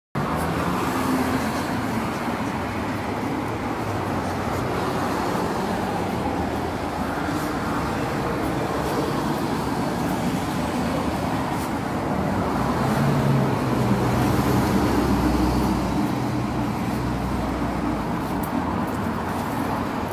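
City street traffic: a steady wash of passing cars, swelling with a deeper engine sound about two-thirds of the way through.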